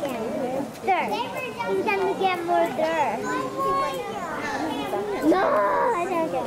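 Visitors' voices chattering, with children's high-pitched voices calling out and exclaiming over one another.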